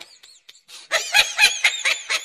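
High-pitched laughter in quick repeated bursts, about five a second, starting about a second in.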